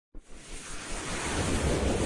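A whooshing sound effect: a rushing noise over a low rumble, swelling steadily louder, as the opening of an animated logo intro.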